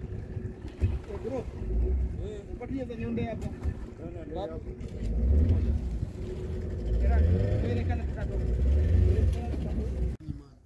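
Outboard motor of a small boat running at idle, a steady hum under the scene, with wind rumbling on the microphone in gusts from about halfway through.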